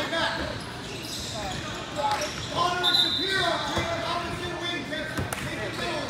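Basketball bouncing on an indoor court, with people's voices echoing around a large hall and a brief high squeak about three seconds in.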